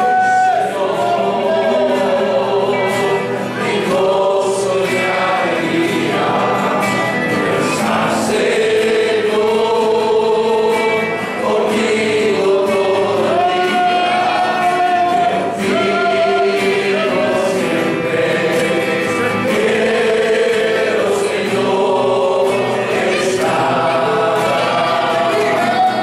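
A congregation singing a hymn together in long held notes, accompanied by a group of guitars.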